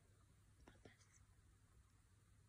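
Near silence: room tone with a low steady hum, and a couple of faint soft clicks about a second in.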